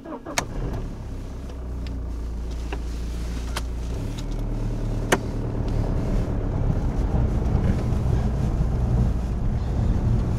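A BMW car's engine is push-button started and then runs steadily, heard from inside the cabin; the low engine sound changes about four seconds in as the car gets moving. A few sharp clicks sound over it, the loudest about five seconds in.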